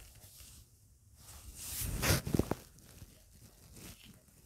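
Cloth and a tape measure being handled on a table: a rustling scrape that swells about a second and a half in and peaks around two seconds with a few small clicks, then fades.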